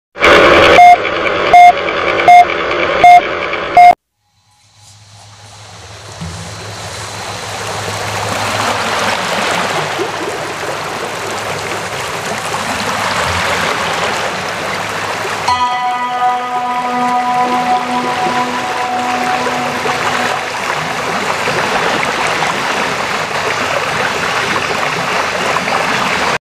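Film-leader countdown: five short, loud beeps about three-quarters of a second apart. After a moment of silence, background music with a rushing, water-like sound fades in and runs on steadily.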